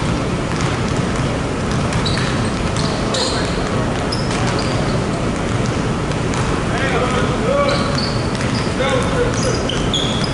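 Several basketballs bouncing on a hardwood gym floor in a large, echoing gym, over a steady background rush. Short high squeaks, most of them in the second half, and faint distant voices run through it.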